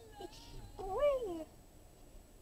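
A single short, high-pitched cry about a second in, rising and then falling in pitch like a meow, after a fainter gliding call at the start.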